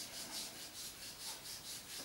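Hands rubbing quickly back and forth over a patient's bare thigh and hip in massage, a faint, even run of about five strokes a second.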